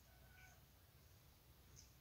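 Near silence: room tone with a low hum, and a faint, brief thin tone about half a second in.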